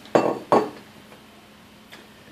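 Two sharp knocks of an Ozeri Prestige electric wine opener's housing against a glass wine bottle as it is fitted down over the neck.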